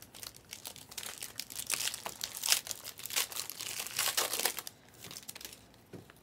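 Crinkling and crackling of plastic packaging and trading cards being handled and shuffled, a dense run of irregular crackles and clicks that thins out near the end.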